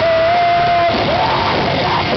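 A live rock band playing loud with electric guitars. A single high note is held steady for nearly the first second, then the full band sound carries on with voice-like lines over it.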